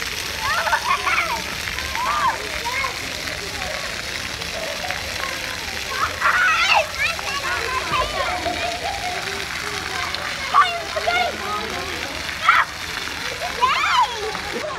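Splash-pad water jets spraying steadily and splashing down onto wet concrete, with children's voices calling out now and then over it.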